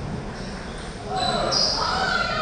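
Table tennis balls bouncing off tables and bats during rallies on several tables. Voices in the hall grow louder about a second in.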